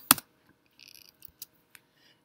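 Computer keyboard and mouse clicks while editing: one sharp click just after the start, then a few faint clicks.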